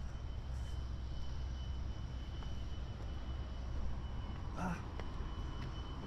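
Steady low outdoor rumble of riverside city ambience, with a faint steady high-pitched tone running through it.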